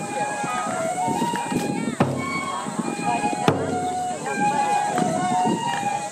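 Live accompaniment for a nenbutsu kenbai folk dance: chanting voices hold and step through a slow melody, and a drum is struck twice, about a second and a half apart, in the middle.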